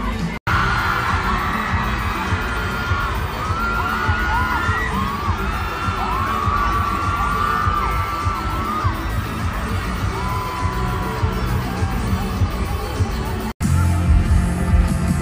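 Arena crowd screaming and cheering, many high voices wailing up and down at once over a steady low rumble. The sound breaks off for an instant just after the start and again just before the end.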